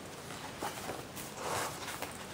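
Paper notebook insert being slid and worked into a stiff planner cover by hand, giving faint rustles and a couple of soft knocks of paper and card against the table.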